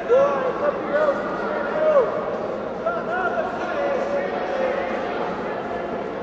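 Several voices shouting over one another in a reverberant hall, with short loud calls right at the start, about a second in and about two seconds in.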